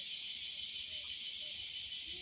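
A steady, high-pitched insect chorus drones on without a break, with no speech over it.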